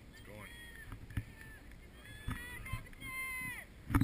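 Distant high-pitched voices shouting across an open field, with a long call about three seconds in that drops in pitch at its end. A few dull low thumps on the microphone, the loudest just before the end.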